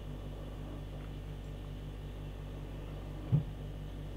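Steady low electrical hum with a faint regular pulsing, and a little over three seconds in one short throat sound from a man drinking beer from a glass.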